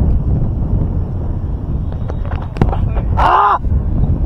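Wind buffeting an open-air camera microphone in a steady low rumble, with a few sharp knocks past the middle and one short, loud pitched call about three seconds in.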